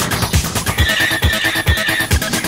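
Early-1990s techno track with a steady kick-drum beat. About a second in, a high-pitched sampled sound is layered over the beat.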